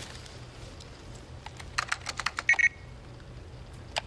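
Computer keyboard typing: a quick run of about eight keystrokes starting about a second and a half in, followed by a short high electronic beep, over a low steady hum.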